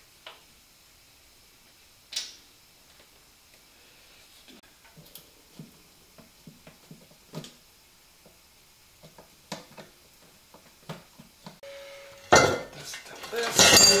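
Metal tools and dirt-bike parts clinking in scattered clicks and taps during rear-shock work, then a brief squeak followed by a louder stretch of metallic clattering and rattling near the end.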